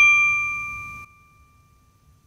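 A bright, bell-like ding sound effect for a logo intro, struck just before and ringing down with several clear tones. The ring drops off sharply about a second in, leaving a faint single tone that fades out near the end.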